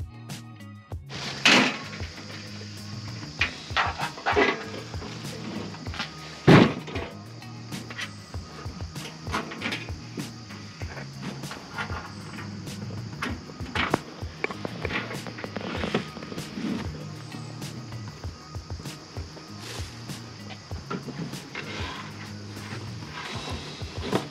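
Background music over scattered knocks and clatter of a Coleman camp stove and camp cooking gear being handled on a plastic folding table, with two louder thunks, about a second and a half in and about six and a half seconds in.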